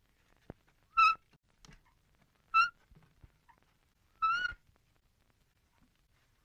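Three short, high-pitched squeaks about a second and a half apart, as a hand-pulled wooden cart rolls along, with faint ticks between them.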